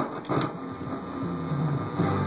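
Vintage Howard 435A tube radio receiver being tuned between AM stations: hum and static with shifting, unsteady tones and a sharp click about half a second in.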